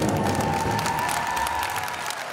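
The closing note of a stage show's music held and slowly fading, as an audience applauds and cheers.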